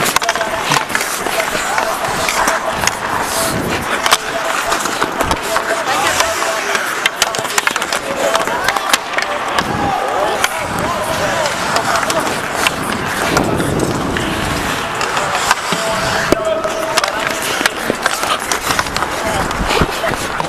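Hockey skate blades scraping and cutting across the ice close to the microphone as the skater moves, with frequent sharp clicks from stick and puck.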